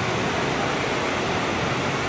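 Steady, even rushing background noise of a large indoor shopping arcade, with no single sound standing out.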